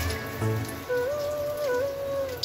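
Medu vada batter sizzling as it deep-fries in hot oil in an iron kadai, with background music carrying a slow melody over it.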